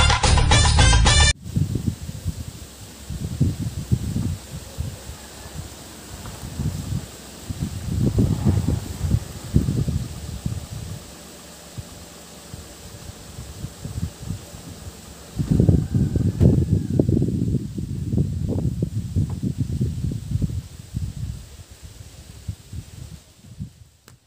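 A music jingle ends about a second in. After that, gusts of wind buffet the phone microphone in irregular low rumbles, loudest near the middle and from about 15 to 21 seconds in. A low steady hum from the car being parked runs under it in the middle stretch.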